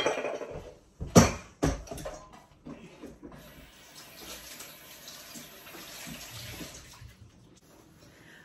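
Clatter of a metal mixing bowl and utensils being put down, with a second loud clatter about a second in. Then a kitchen tap runs steadily into the sink for about four seconds and stops near the end.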